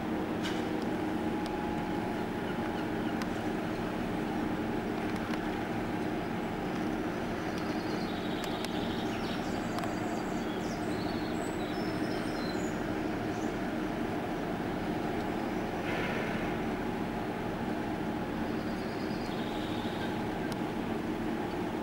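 Steady mechanical hum holding several tones over a low rumble, like a running diesel engine or generator, with faint short high chirps in the middle.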